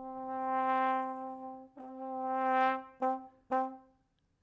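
Sampled trombone from Native Instruments' Valves library playing a programmed sequence on one held pitch: a long swell that rises and fades, a shorter crescendo, then two short staccato notes about half a second apart. The trombone is panned hard right.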